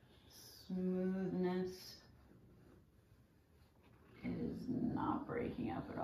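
A woman's voice without clear words: a short steady hummed note about a second in, then quiet whispering from about four seconds in.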